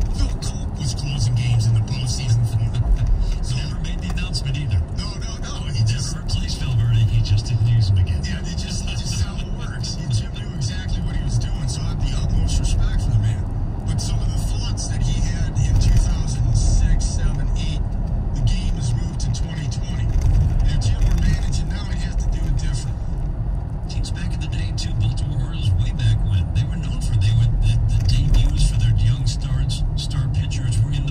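Steady low road and engine rumble inside a moving car's cabin, with an indistinct talk-radio voice playing underneath.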